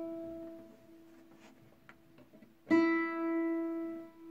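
The open high E string of a nylon-string flamenco guitar is plucked and left to ring out while being tuned; it is struck again about three seconds in. The tuner reads the note as a little sharp.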